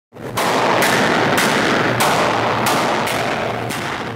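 Mk4 Volkswagen Golf's exhaust sounding loudly, with sharp bangs about twice a second over a continuous rasp, in a concrete parking garage.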